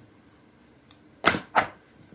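Paper pages of a thick textbook being flipped by hand: two quick swishes in close succession a little over a second in.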